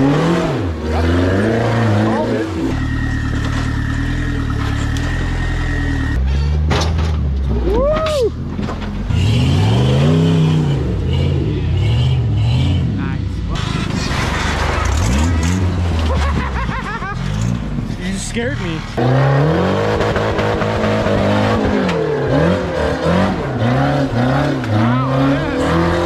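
Rock buggy engines revving hard in repeated rising and falling surges as the buggies crawl up steep rock, the sound changing abruptly every several seconds from one climb to the next. About three seconds in, a steady high whine runs for a few seconds.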